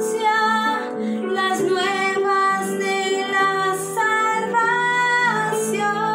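A woman singing a slow worship hymn over instrumental backing, in phrases of long held notes that bend at their ends.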